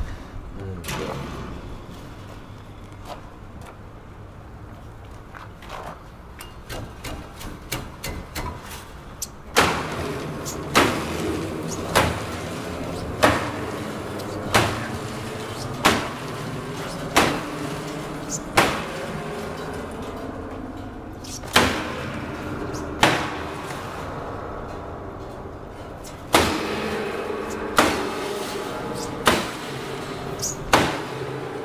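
A sledgehammer striking the exposed strings and cast-iron frame of a stripped upright piano. After some lighter knocks, heavy blows begin about ten seconds in, roughly one every second and a half, each leaving the strings ringing.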